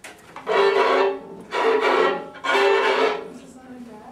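Violins and cello playing three loud, held bowed chords, each about half a second to a second long with short gaps between.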